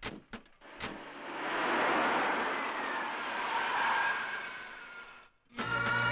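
A car, a Hindustan Ambassador, pulling away, with a few light clicks at first and then a rush of engine and tyre noise that swells and fades over about four seconds. Music starts right at the end.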